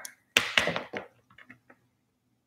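Close handling noise: a quick run of knocks and clicks lasting about half a second, then a few faint ticks, as plastic-winged dialysis fistula needles and their tubing are handled near the microphone.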